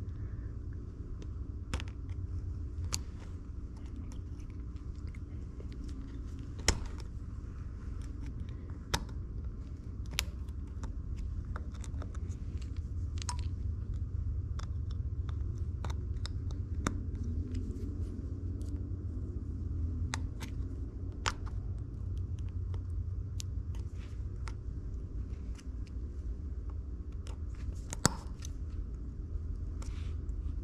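Steel spiral lock wrist pin retainer being wound into the groove of a piston's pin bore with a small screwdriver: scattered light metal clicks and scrapes, with two louder snaps, one about a quarter of the way in and one near the end, as the lock snaps twice before seating fully. A steady low hum runs underneath.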